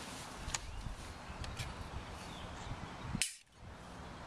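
Sharp clicks from a hydraulic tree trunk injector as its needle tip is seated in a drilled hole in the trunk and the dose begins: a few light clicks, then one loud, sharp click about three seconds in.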